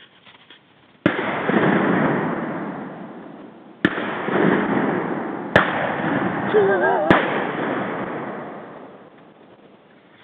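Four shotgun shots fired at birds flying overhead: the first about a second in, then three more in quick succession, each followed by a sound that carries on and fades over several seconds.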